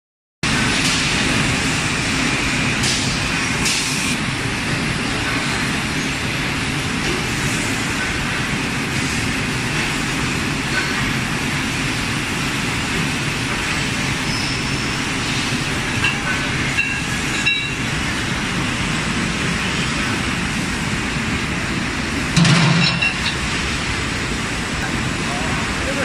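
Hydraulic bar and pipe bending machine running steadily, its hydraulic power unit giving a continuous noise while it bends threaded bolt rod, with a few short clicks along the way and a louder clunk near the end.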